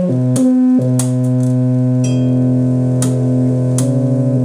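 Homemade two-string analog guitar synthesizer played by fingering its metal strings: steady held synthesizer notes with rich overtones that change pitch a few times, with a few sharp clicks along the way.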